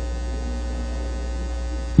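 Steady low electrical hum with faint thin tones above it, typical of mains hum from a microphone and public-address system.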